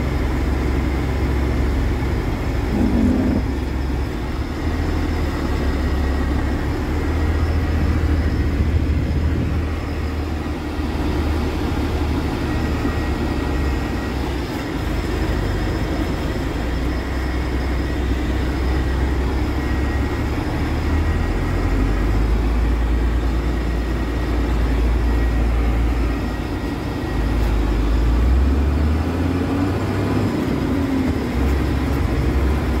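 Truck engine running with road noise, heard from inside the cab while driving slowly in traffic: a steady low rumble that swells and eases a little.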